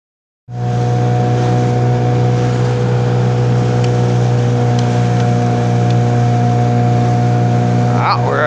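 A small boat's motor running at a steady speed under way: an unchanging hum with a hiss over it. It starts about half a second in.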